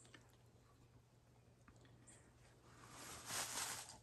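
Near silence for about three seconds, then a faint, breathy, hissing call near the end: a man's mouth-call imitation of a hen turkey, which he himself calls a very lame attempt.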